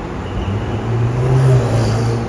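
Ferrari supercar engine running with a low, steady note that grows louder about half a second in and is loudest around a second and a half.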